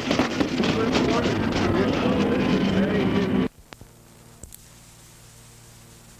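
Loud voices that break off abruptly about three and a half seconds in, leaving a faint steady hum and hiss.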